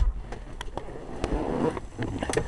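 Handling noise from a handheld camera moving through a car interior: rustling and a few light knocks, loudest about a second and a half in, over a low rumble.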